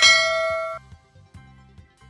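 A bell-like ding sound effect, ringing for under a second and then cutting off sharply, over soft background music.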